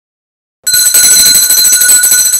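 Silence, then about two-thirds of a second in a loud bell starts ringing rapidly and continuously, like an electric alarm bell.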